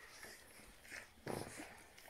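Faint sounds from 23-day-old Rhodesian Ridgeback puppies at the teat: a short high sound about a second in, then a brief louder one.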